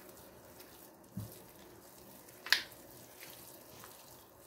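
Soft dough being kneaded by a greased hand in a glass bowl: faint squishing, with a soft thump about a second in and a short sharp slap about halfway through.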